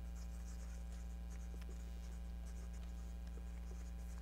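Marker pen writing on paper cut-outs: short, faint, scratchy strokes as words are written one after another, over a steady low electrical hum.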